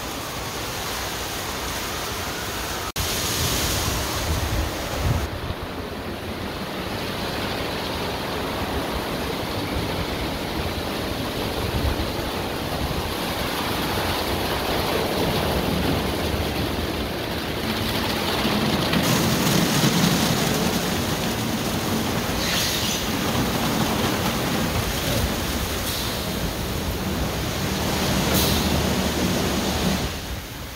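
Ryko SoftGloss XS in-bay car wash machine washing a pickup truck: spinning cloth brushes and water spray make a steady rushing noise. The sound shifts about three seconds in and swells slightly around the middle.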